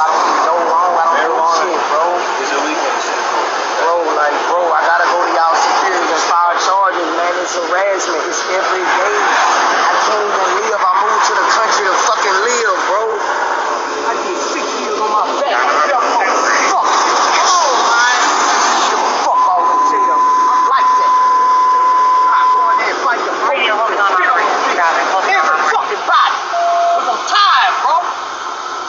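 Tinny, thin-sounding police body-camera recording of men talking and arguing over one another. A steady beep sounds for about three seconds past the middle, and a shorter, lower beep comes near the end.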